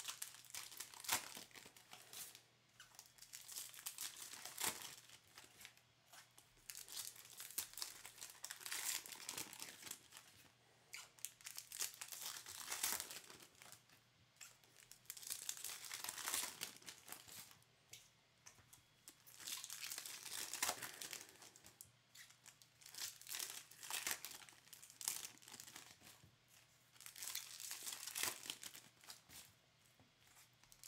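Foil wrappers of trading-card packs crinkling and tearing as the packs are ripped open by hand, in repeated bursts every few seconds.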